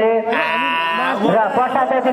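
A man's voice through a handheld microphone, drawn out into one long, steady high note just under a second long, then moving on in pitch without a pause.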